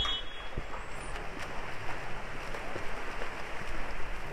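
Water polo players swimming and splashing in a pool, a steady even wash of splashing water.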